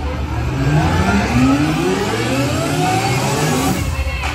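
A pitched sound with harmonics sweeping steadily upward, engine-like, over a steady low bass, played loud through a show's sound system.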